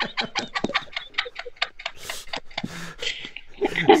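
Women laughing hard in short, breathy, near-voiceless gasps, about five or six a second, coming through a video-chat connection. Voiced laughter and speech come in near the end.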